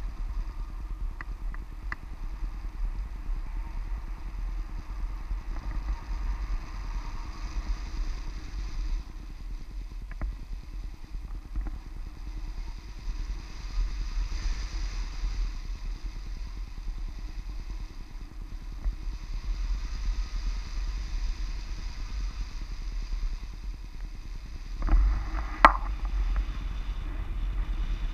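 Wind from the airflow of a paraglider in flight buffeting a camera's microphone, a steady low rumble that rises and falls. About 25 seconds in there is a brief louder rush with a single sharp click.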